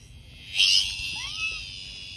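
A high, steady insect buzz coming from something held in a dog's mouth. About half a second in it swells into a sudden loud burst of wavering buzzing, followed by a short rising-then-falling whine about a second in.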